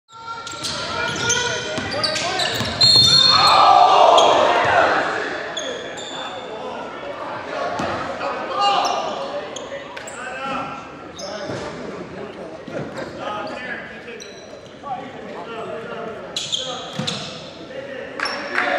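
Basketball game sounds echoing in a gym: sneakers squeaking on the hardwood court, the ball bouncing, and players' voices, loudest about three to four seconds in.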